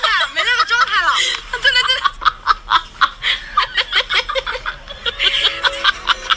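High-pitched laughter: quick rising and falling giggles in the first second, then a run of short snickering pulses.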